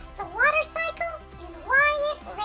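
High-pitched cartoon character voice making three wordless calls that sweep up in pitch, over background music.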